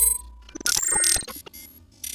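Glitchy, mechanical-sounding intro sound effects, clicking and ratchet-like. A burst at the start fades, a second clattering burst comes about half a second to a second in, and the sound dies away near the end.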